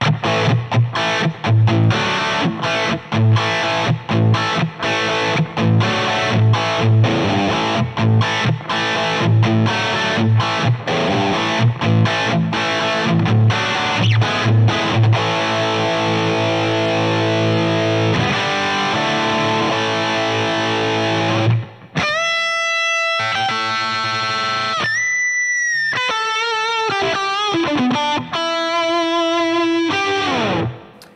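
Electric guitar played through a distorted rock preset on a Line 6 POD Go amp modeller: a driving, chugging rhythm riff for about twenty seconds, then a brief gap and held lead notes, some bending in pitch near the end.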